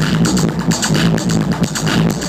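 Techno DJ set playing loud over a club sound system, with a steady, driving beat.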